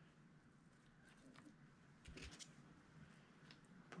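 Near silence: room tone with a few faint rustles and ticks from hands handling the fish skin's fin and card, about a second in and again around two seconds in.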